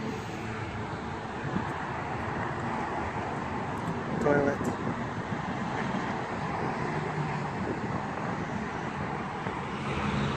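Steady road and engine noise of a moving car heard from inside the cabin, with a brief voice-like sound about four seconds in.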